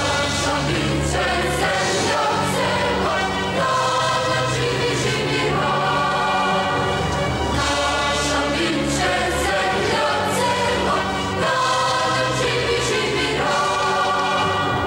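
A choir singing long held notes as part of a music track, steady in level throughout.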